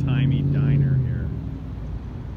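A car engine running close by, a steady low hum that dies away about a second and a half in, with a voice over it.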